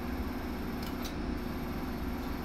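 A single sharp click about a second in, a pulse from a Cutera Excel V vascular laser handpiece firing, over a steady low machine hum.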